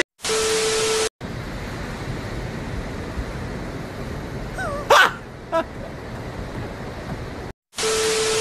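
A static-hiss transition effect with a steady beep tone lasts about a second. Then comes a steady rush of wind and surf noise on a phone microphone, broken about five seconds in by a brief gliding squeal and a sharp knock. The static-and-beep effect returns at the very end.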